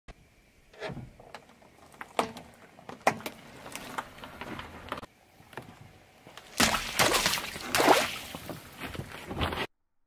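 Things being crushed under a car tyre: a string of sharp cracks and pops, then a louder stretch of crackling and splashing. The sound cuts off suddenly near the end.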